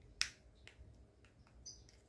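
A sharp plastic click from handling a small action camera, followed by a few fainter clicks as its buttons and casing are worked with the fingers. A brief, faint high-pitched tone sounds near the end.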